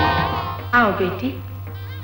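Film background music fading away, then, about three-quarters of a second in, a short voice with a falling pitch. A low steady hum runs under it all.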